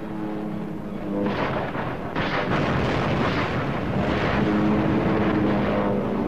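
Combat sound of a kamikaze attack on a carrier: a steady droning aircraft engine, joined after about a second by a dense, loud rumble of anti-aircraft gunfire and explosions that swells again about two seconds in and keeps going.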